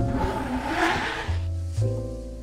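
A blade scraped across a cutting board, sweeping up chopped cherry tomatoes in one swish of about a second, over background music.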